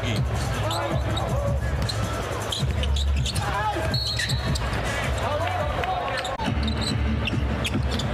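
Live basketball game sound in an arena: a ball dribbling on the hardwood court over steady crowd noise, with voices in the background and a short high tone about halfway through.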